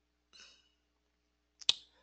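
A single sharp click near the end of an otherwise quiet pause, with a couple of faint soft noises before and after it.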